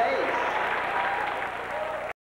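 Audience applauding, with voices shouting over the applause. It gets gradually a little quieter toward the end.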